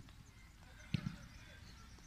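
Two quick thumps of a leather football, a tenth of a second apart, about a second in.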